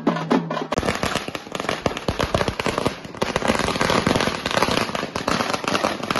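A string of firecrackers going off in rapid, dense crackling for several seconds, after a few drum beats in the first second.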